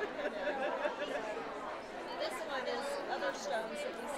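Background chatter of many women talking at once in a crowded room, no single voice standing out.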